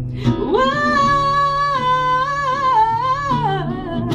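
A woman singing one long held note over a fingerpicked classical guitar. The note swoops up about half a second in and steps down near the end.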